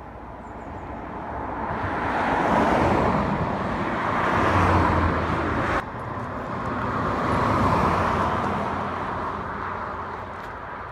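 Traffic passing at speed on a 60 mph main road: the rush of tyres and engines swells and fades as vehicles go by, loudest around three to five seconds in and again near eight, with a sudden drop just before six seconds.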